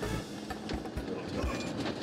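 Quiet background music over the low road noise of a moving motorhome cab, with a few soft low thumps.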